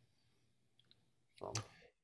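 Near silence on a video-call line, with one faint click a little under a second in.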